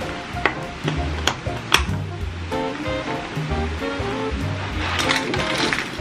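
Background music with a bass line and a melody, over sharp clicks of a cardboard Nespresso box being handled and aluminium Nespresso Vertuo capsules knocking together. A denser clatter of capsules comes near the end.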